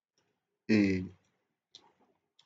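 Speech only: a man says one short drawn-out vowel, followed by silence broken by a single faint click.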